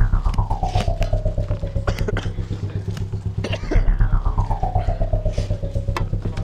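Jaw harp twanging a low drone in quick, steady pulses, with a bright overtone that sweeps smoothly down from high to low twice.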